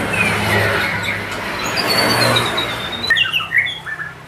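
A vehicle passing on the road, its noise swelling and then fading about three seconds in, while small birds chirp over it. A long thin whistle slowly falls in pitch near the middle, and a run of sharp chirps follows as the passing noise dies away.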